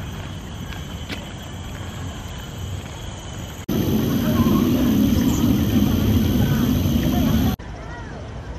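A steady low outdoor rumble, then about four seconds in a sudden louder stretch of water from a sphere fountain spilling and splashing over a bed of rocks, which cuts off sharply just before the end.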